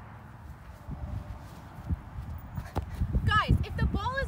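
Wind rumbling on the microphone in gusts, building after about a second, with a voice starting to speak near the end.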